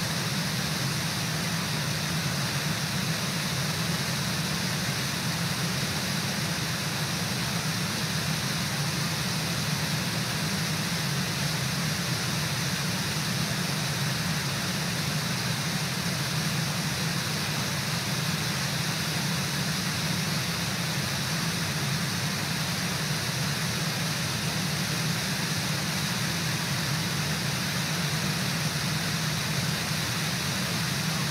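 Brooks Falls, a low river waterfall, rushing steadily: an even, unbroken noise of falling water.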